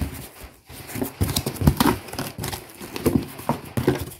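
A taped cardboard box being opened by hand, its flaps pulled back with a string of irregular knocks and scrapes of cardboard.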